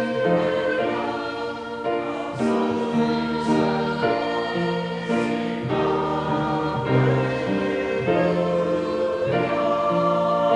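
Church choir of men and women singing a slow piece in harmony, holding chords that change about every second.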